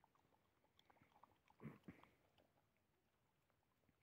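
Near silence with faint, scattered clicks of dogs eating tortillas from a tray, and one brief soft sound about a second and a half in.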